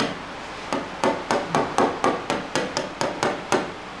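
A stylus pen tapping quickly on an interactive smartboard screen, about fifteen sharp taps at roughly five a second, as it dots marks onto a drawing.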